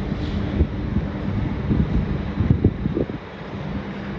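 Steady low mechanical rumble with a faint hum, wind buffeting the microphone, and a few low knocks.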